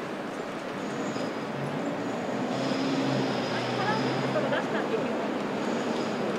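City street traffic: steady road noise from passing cars, with a vehicle's engine hum rising in the middle, and passers-by talking.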